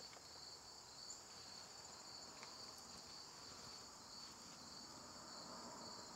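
Faint, steady chorus of singing insects such as crickets: a continuous high-pitched trill that does not change.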